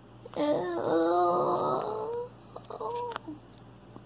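A person's voice giving a long, drawn-out wordless cry of dismay lasting about two seconds, then a shorter second cry.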